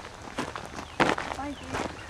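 A few footsteps on rocky ground, spaced well apart, with a short voiced murmur from a person about one and a half seconds in.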